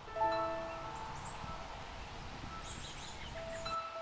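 Soft chime-like musical notes: several notes sound together about a quarter second in and ring out over a second or so, and another note comes in near the end, over a faint steady background hiss.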